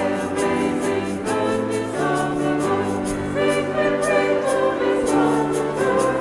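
Group of voices singing an upbeat hymn over instrumental accompaniment, held notes changing every second or so, with a steady percussive beat.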